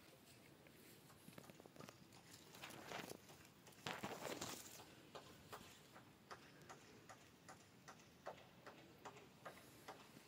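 Near silence: faint outdoor background with scattered soft ticks and a couple of brief, soft rustles about three and four seconds in.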